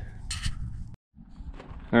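Wind rumbling on the camera microphone outdoors, low and steady, with a short hiss early on. About a second in it drops out for an instant, then the rumble resumes.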